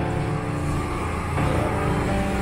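A small truck's engine runs close by in a narrow street, over background music.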